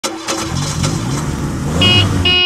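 Passenger shuttle van driving up close by, its engine note rising as it approaches; a high, steady squeal joins near the end.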